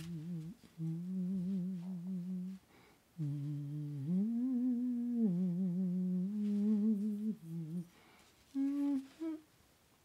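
A person humming a slow, wandering tune in a few phrases, with long held notes and a slight wavering in pitch. The humming stops shortly before the end.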